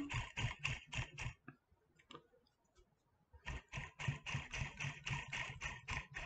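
Rapid, even ticking, about seven clicks a second, as a dubbing loop is spun up with a dubbing spinner to twist the wool roving into a dubbing brush; it stops for about two seconds partway through, then resumes.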